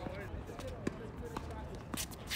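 A tennis ball bounced on a hard court three times, about half a second apart, as a player readies to serve, with faint voices in the background.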